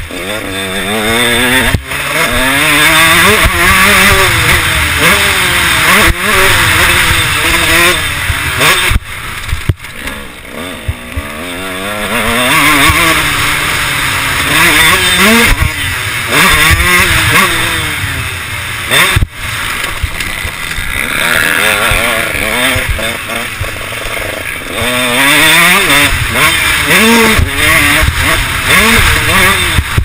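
KTM 150 SX 2012 single-cylinder two-stroke motocross engine being ridden hard, its pitch sweeping up through the revs and falling back over and over, with sharp drops each time the throttle is chopped.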